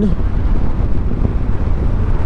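Steady wind rush on the microphone of a moving motorcycle, with the engine and the tyres on gravel running low underneath.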